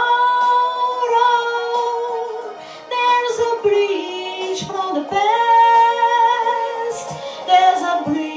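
A woman singing a slow song into a microphone, long held notes that slide between pitches, with a short pause for breath about three seconds in.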